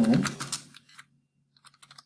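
Computer keyboard being typed on, with a quick run of key clicks in the second half.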